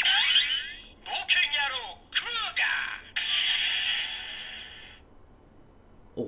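Electronic sounds from the small built-in speaker of a Kamen Rider Ex-Aid DX Legend Rider Gashat toy (Adventure Guy Kuuga), thin and tinny. A burst of sweeping electronic tones and a recorded voice play first, then a hissing sound effect about three seconds in that fades away.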